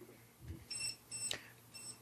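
Handheld digital thermometer giving three short high-pitched beeps as it takes temperature readings.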